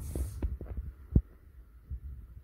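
Close-up handling noise: soft low thumps and rumble from hands working at the decorated idol, with one sharper thump about a second in.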